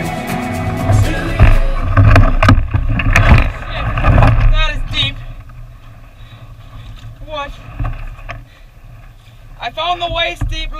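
Loud knocking and rumbling through the hull of an overturned canoe as its carrier stumbles and sinks down into mud on a portage, picked up by a camera inside the hull. After about four seconds it turns quieter, with a few short vocal sounds.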